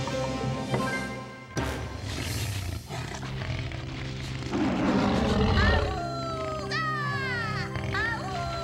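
Orchestral cartoon score with a cartoon dinosaur's roar swelling up about halfway through. It is followed by a run of high, falling cries, roughly one a second.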